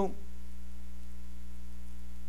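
Steady electrical mains hum, a low constant drone with no other sound over it.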